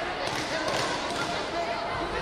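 Sports-hall background voices, with a few short dull thuds in among them.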